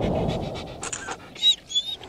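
Intro sound effect: a dog panting for about a second, then two short high chirps.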